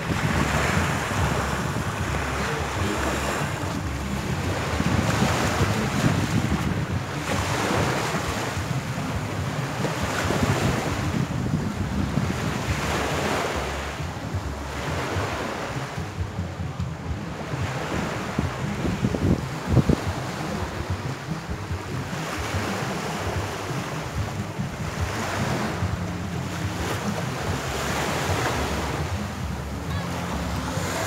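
Small waves washing onto a sandy beach, swelling and falling back every couple of seconds, with wind buffeting the microphone in a low rumble. A short sharp thump stands out about two-thirds of the way through.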